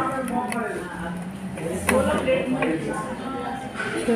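Indistinct talking, with a single sharp click about two seconds in.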